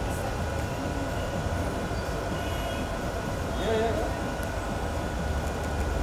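Steady low rumble of background noise, with faint voices calling out now and then.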